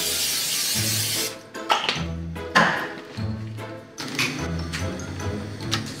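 Aerosol cooking spray hissing into a frying pan for about a second at the start, over background music with a steady bass beat.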